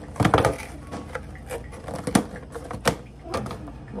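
Thin clear plastic clamshell food container crackling and snapping as its lid is worked open and a croissant lifted out: a quick burst of crackles near the start, then a few single sharp snaps.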